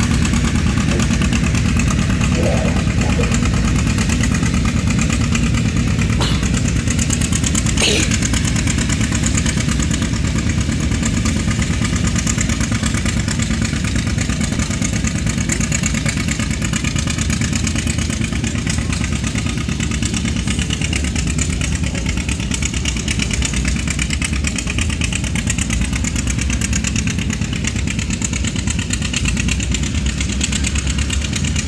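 Vintage John Deere tractor's engine running hard under load as it drags a weight-transfer sled down a pulling track, a steady low pulsing beat that grows slightly fainter as the tractor moves away.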